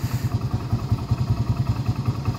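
Hero Splendor motorcycle's single-cylinder four-stroke engine idling with a steady, even low beat.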